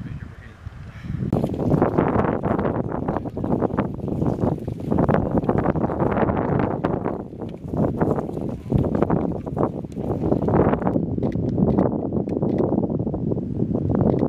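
Wind buffeting the microphone: a loud, gusty rumble that swells and drops, starting about a second in.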